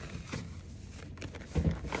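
Cloth rustling and handling noise as a wool trouser leg is pulled up over the cuff of a plastic ski boot, with a short, low thump of rustling fabric near the end.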